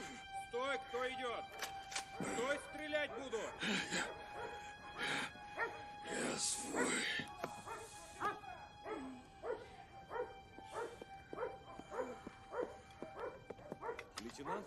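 Dogs barking and yelping in many short, repeated calls, over background music with a steady held tone.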